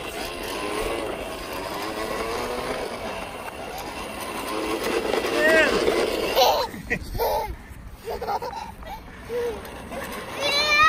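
A toddler's voice babbling and squealing over the steady whir of a toy bubble lawnmower being pushed across grass. The whir drops out after about six seconds, leaving short broken calls.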